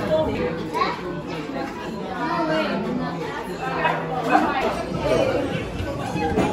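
Indistinct chatter of several people talking at once in a restaurant dining room.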